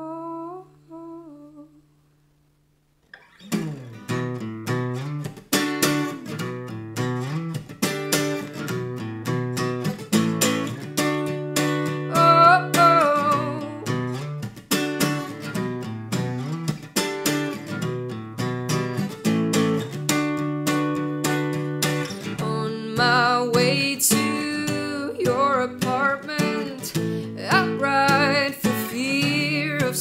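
Acoustic guitar played note by note in a steady picked pattern, with a woman's voice coming in wordlessly over it in places, mostly in the last third. The music stops for about a second shortly after the start, then the guitar comes back in.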